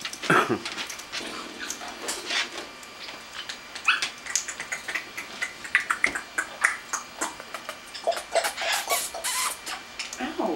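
Pet parrots chattering: a stream of short, sharp chirps, squawks and clicks throughout, with no steady song.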